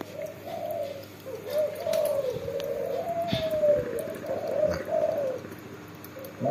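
A dove cooing in a long run of low, wavering notes, with a few faint clicks.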